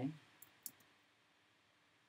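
Two light keystrokes on a computer keyboard, about half a second and three-quarters of a second in.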